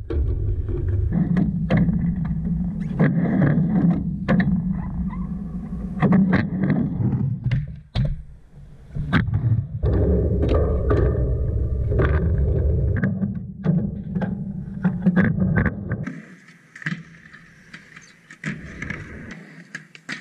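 Skateboard wheels rolling back and forth across a mini ramp, a low rumble that swells and fades with each pass, broken by sharp clacks of the board and trucks hitting the metal coping and the deck. About 16 s in the rumble stops, leaving only scattered fainter clacks.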